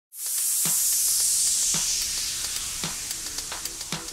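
Opening of a deep house track: a loud rush of white-noise hiss that slowly darkens, with a kick drum about once a second and faint hi-hat ticks; a held synth chord comes in near the end.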